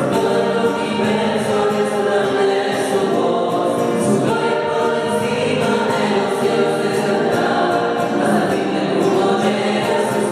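A small choir of women's voices singing a hymn together, continuously and at a steady level.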